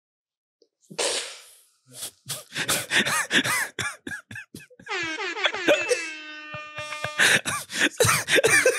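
Men laughing hard at a corny joke: a sharp breathy burst, then stuttering laughter, then a long drawn-out groaning wail that falls in pitch and holds, then more laughter near the end.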